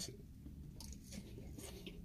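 Faint chewing of a mouthful of salad, with a few soft crunches.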